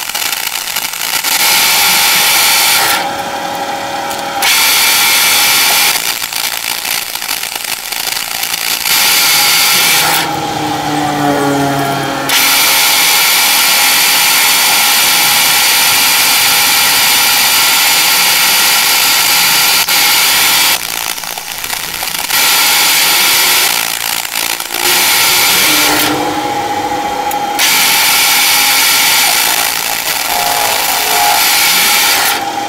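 Metal lathe turning a metal bar, the tool taking cuts with a loud hissing cutting noise. The cutting breaks off four times for a second or two, leaving only the lathe's lower running whine, which slides down in pitch about ten seconds in.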